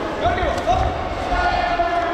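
Dull low thuds of footwork on the boxing ring canvas during a youth bout, with voices calling out in a large, echoing sports hall.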